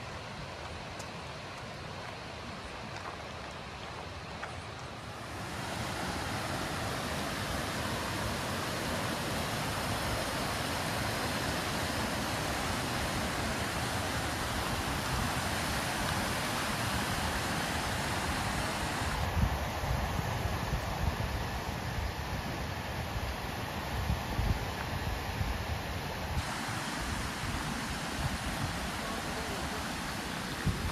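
Rushing creek: a steady hiss of water running over rocks, growing louder and brighter about five seconds in.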